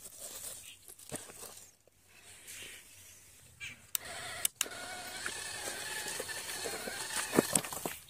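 Small electric motor of a homemade RC model tractor whining steadily, starting about halfway through after a few sharp clicks. Knocks and scrapes rise over it near the end.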